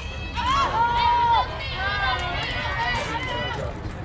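Spectators yelling and cheering for a softball hit: one long held shout about half a second in, then several voices calling out over each other.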